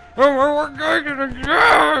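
A gagged man moaning and whimpering in several drawn-out wails, with a louder, rougher cry near the end.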